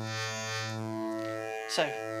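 Dove Audio Waveplane wavetable oscillator holding a steady low drone. Its tone changes as an LFO sweeps the bottom-right corner's wavetable, and a bright upper buzz swells and fades in the first second.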